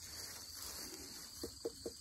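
Faint steady chirring of insects in the background, with a few brief soft sounds about one and a half seconds in.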